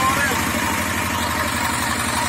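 Zubr walk-behind tractor's single-cylinder engine running steadily with a rapid, even pulse.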